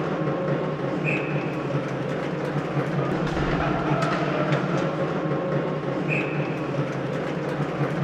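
Steady din of an ice hockey arena during play, with faint clicks and two brief high chirps, one about a second in and one about six seconds in.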